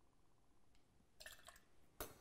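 Near silence: a faint trickle of pineapple juice from a metal pour spout into a metal bell jigger, with a few faint short splashes about a second in.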